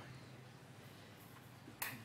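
Quiet room tone with a low steady hum, broken near the end by one short sharp click just before speech resumes.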